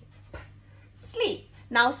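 A voice speaking after a pause, beginning 'Now, the' near the end, with a single sharp click about a third of a second in and a short falling vocal sound a little after one second, over a faint steady hum.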